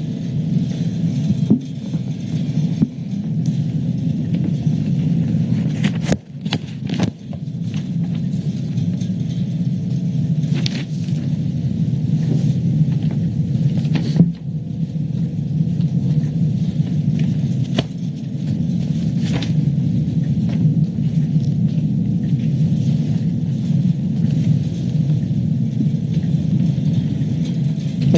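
Steady low hum of a meeting room picked up by open microphones, with a handful of short clicks and knocks from papers and objects being handled on the table while handouts are read.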